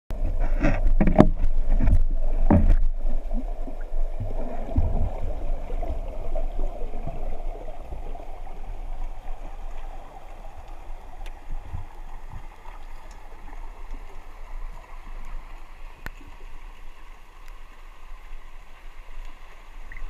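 Muffled underwater sound picked up by a GoPro inside its waterproof housing. There are a few loud knocks and splashes in the first three seconds as the diver goes under, then a steady low water rumble.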